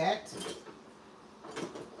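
Faint clinks and rattles of kitchen utensils as a hand rummages in an open utensil drawer, in short bits a little after the start and again past the middle.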